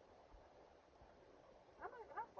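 Near silence: faint background hum inside a car cabin. Near the end a short pitched vocal sound begins.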